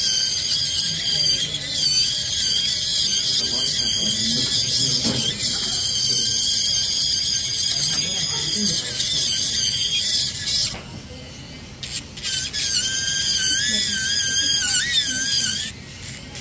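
Dental laboratory micromotor handpiece with an acrylic bur running as it trims excess acrylic off a lower special tray: a high-pitched whine whose pitch wavers as it cuts. It cuts out about two-thirds of the way through, starts again about a second and a half later, and stops again at the end.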